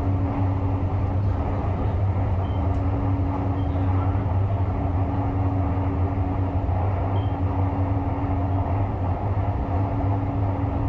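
Cabin noise inside a moving electric light-rail train: a steady low hum with a fainter higher tone running over it, and no speech.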